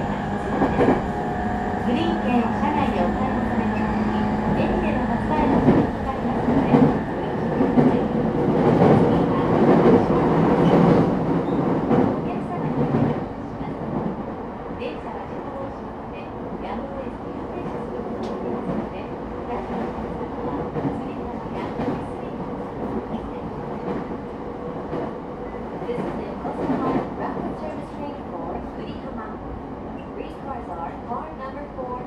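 Interior running sound of a JR East E217 series EMU motor car, its Mitsubishi IGBT inverter and traction motors whining over the rolling noise and clicks of wheels on rail joints. It is louder for the first dozen seconds or so, then drops to a quieter steady run.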